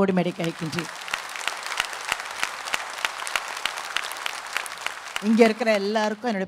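Audience applauding: many hands clapping for about four seconds, between stretches of amplified speech at the start and near the end.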